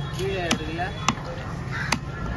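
Heavy fish-cutting knife chopping through fish onto a wooden chopping block: three sharp chops, a little over half a second apart.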